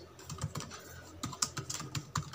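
Typing on a computer keyboard: an irregular run of key clicks.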